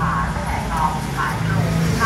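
Steady street traffic hum with faint voices talking in the background.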